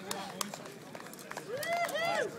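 A group of young men cheering and shouting together, with a few scattered handclaps; a loud, drawn-out shout from several voices rises and falls in the last half second.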